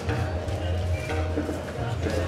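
Busy street sound: a crowd of voices over a steady low traffic hum, with background music mixed in.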